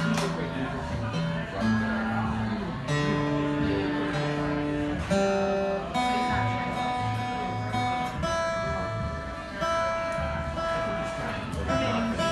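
Acoustic guitar played quietly: chords strummed and left to ring, changing every second or two.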